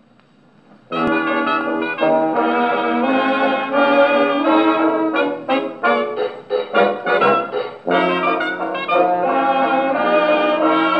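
A 1926 Victor Credenza Orthophonic Victrola playing a 1928 Columbia 78 rpm shellac record through its acoustic horn with a steel needle. Faint needle noise in the lead-in groove gives way about a second in to a brass-led dance band playing a fox trot. The band plays short separated chords in the middle, then sustained playing near the end, with no deep bass or high treble.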